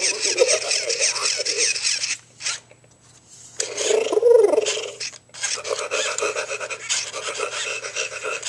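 Robotic toy spinosaurus giving harsh, noisy growls from its speaker as it is petted, in three stretches broken by short pauses about two and a half and five seconds in.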